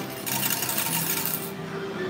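Coins clattering out of a Changestar AC-5400D arcade coin changer into its metal payout cup. The clatter starts just after the beginning and lasts about a second and a quarter.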